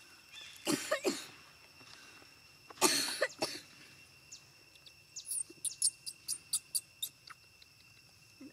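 Two short coughs about two seconds apart, the second the louder, followed by a quick run of about a dozen sharp clicks, over a steady high-pitched insect drone.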